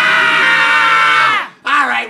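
A person screaming: one long, loud held cry that drops in pitch and breaks off about a second and a half in, followed at once by shouted talk.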